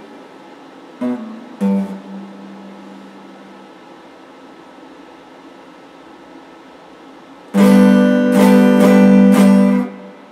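Stratocaster-style electric guitar: two short notes about a second in, the second ringing on for a couple of seconds, then a faint steady hum until a loud chord is strummed repeatedly for about two seconds near the end and cut off sharply.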